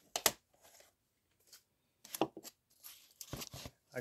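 Handling noise: two sharp clicks at the start, a few more clicks about two seconds in, and a short rustle a little after three seconds, like hard plastic items being picked up and set down.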